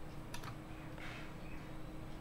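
A few keystrokes on a computer keyboard, light clicks clustered about a third to half a second in, as a file path is typed into a dialog box.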